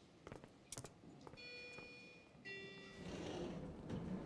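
Footsteps on a hard floor, then an elevator's two-note arrival chime about a second and a half in, the second note lower, followed by the elevator doors sliding open.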